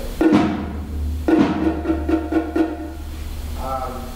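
A percussionist playing a multi-drum setup with sticks: a loud stroke that leaves a low boom ringing, like a timpani, then a second stroke about a second later and a quick run of strokes, about five a second, over the ringing low tone.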